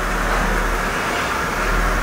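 Mercedes-Benz CLS 55 AMG's supercharged 5.4-litre V8 running steadily at low revs as the car creeps forward.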